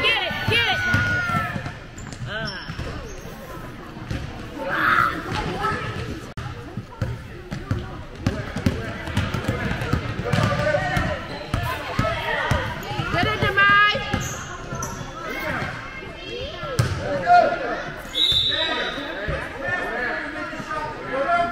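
A basketball bouncing repeatedly on a gym's hardwood floor as children dribble and run up the court, with scattered voices of players and spectators echoing in the hall.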